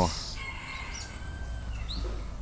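A long drawn-out bird call lasting about a second, with a short rising chirp near the end.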